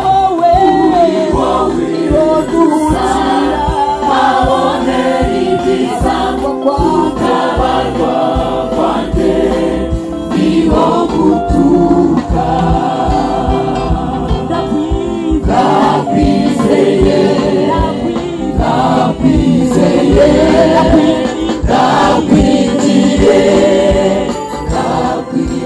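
Mixed choir of men and women singing a Rwandan gospel song in parts, over a steady beat.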